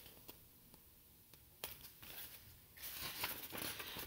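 Faint handling of a book: a few light clicks and a soft paper rustle as the open book is held up and lowered.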